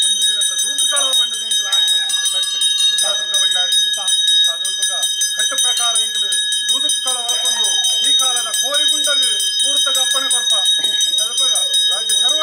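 A voice speaking in long rising-and-falling phrases over bells ringing continuously.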